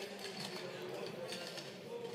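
Low murmur of distant, indistinct voices in a chamber, with no clear words.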